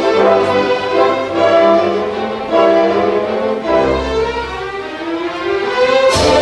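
Orchestra playing the music for a male ballet variation, with violins to the fore.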